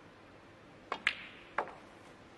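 A snooker shot: the cue tip strikes the cue ball, then the cue ball clicks sharply into the blue a moment later. A softer knock follows about half a second after as the blue is potted.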